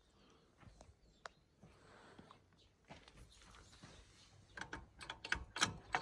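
Faint scattered clicks and rustles, then a quick run of louder clicks and knocks near the end as a scooter's kickstarter lever is worked by hand.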